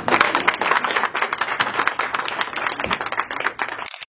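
A small group of people applauding, with many hands clapping at a steady level.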